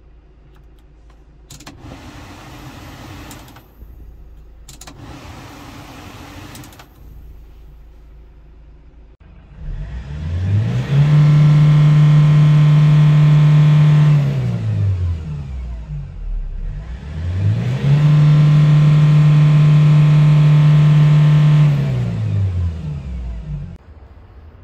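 Kia Bongo 3 truck engine idling, then revved twice while parked. Each time the pitch climbs to a high steady hold of about three to four seconds, near 4,500 rpm, before dropping back to idle.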